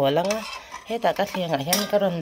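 A wooden pestle scraping against a steel bowl as a mashed chilli chutney is scooped out, with a person's voice talking over it.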